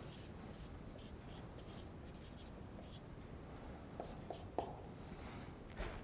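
Dry-erase marker writing on a whiteboard: faint, short squeaky strokes as letters and symbols are drawn, then a few soft clicks about four seconds in.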